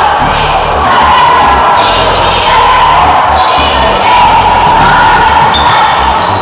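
Loud background music with a heavy bass line that changes note every fraction of a second.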